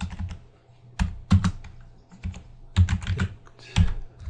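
Typing on a computer keyboard: a few separate keystrokes about a second in, then a quicker run of clicks in the second half.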